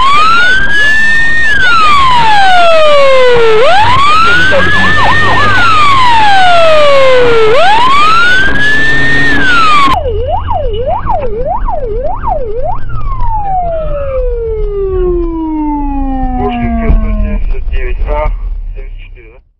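Police car siren wailing, rising and falling slowly about every four seconds, with a brief quick warble about five seconds in. About ten seconds in the sound cuts to a quieter siren: a few seconds of fast yelps, then one long falling tone, over a low engine drone.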